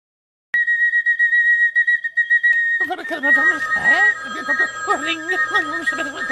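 A kettle whistling: a steady high tone with a slight waver starts about half a second in. From a little before halfway, a babbling, pitch-bending voice joins it while the whistle carries on.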